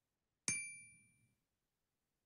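A single bright bell-like ding, struck once about half a second in, with a clear high ring that fades away within about a second.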